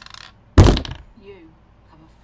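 A single loud, heavy thump about half a second in, with a short fading tail.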